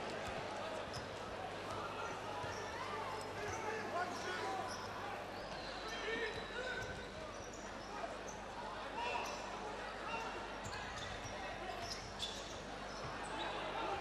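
A basketball being dribbled on a hardwood court under the steady murmur of an arena crowd, with faint voices calling out.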